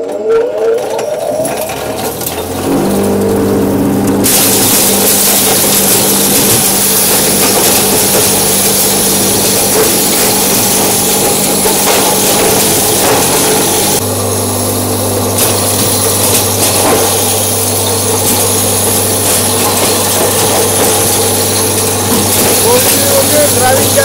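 Electric grain crusher starting up and spinning up to speed over the first couple of seconds, then running steadily with a hum. From about four seconds in, a loud grinding rush as corn cobs are fed in and crushed into meal.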